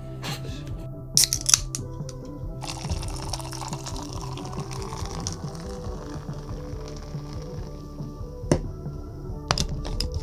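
Background music plays throughout. Over it, a couple of sharp clicks come about a second in, then cola is poured from a can into a cup for about three seconds, ending around six seconds in. A few more light clicks come near the end.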